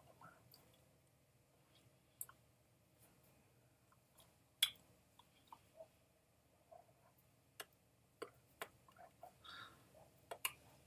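Near silence: quiet room tone with a few faint, scattered clicks. The sharpest comes about halfway through, and several more follow in the last few seconds.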